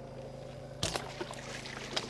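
A bowfishing bow is shot about a second in, a single sharp snap, followed by lighter splashing and sloshing as the arrowed fish thrashes at the surface.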